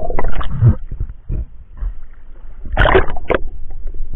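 Muffled underwater noise from a camera in its housing: irregular bursts of water movement and knocking as a diver handles a speared barracuda. The loudest burst comes about three seconds in, with a low rumble between the bursts.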